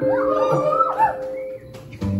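The band playing softly between spoken lines: a held, steady note with several high, wavering pitches gliding up and down over it for about a second, then fading.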